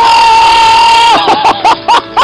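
A person's loud, long held yell, then about four short cries in quick succession as a mass of snow comes sliding off the roof.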